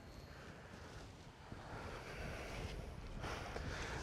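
Faint low rumble of wind on the microphone over outdoor background noise, growing a little louder in the second half.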